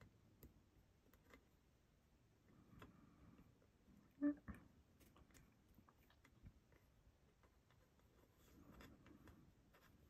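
Near silence with faint scattered taps and soft rubbing as fingers and fingernails shape soft polymer clay on a card work surface. There is one short, louder pitched blip about four seconds in.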